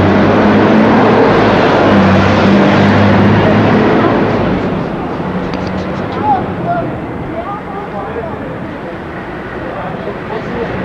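A motor vehicle's engine running close by in street traffic, with a steady low drone for the first four to five seconds before it fades, leaving quieter traffic noise.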